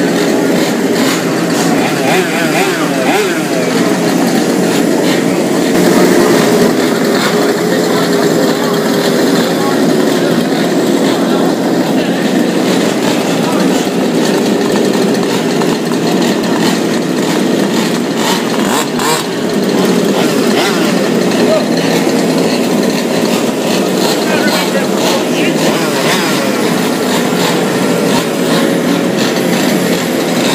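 Several large-scale RC cars' small two-stroke petrol engines running together, idling and revving with overlapping, wavering pitches.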